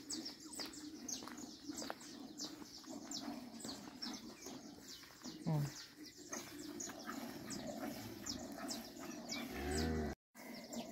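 Birds chirping over and over, in many short, high, falling chirps. A cow lows once near the end.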